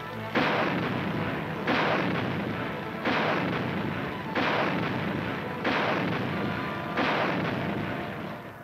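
Anti-aircraft gun firing six shots at a steady pace, about one every 1.3 seconds, each a sudden loud bang that fades off before the next.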